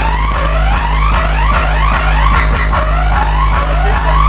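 Electronic siren-like sound effect played loud over a sound system: quick, repeated rising sweeps over a steady deep bass drone.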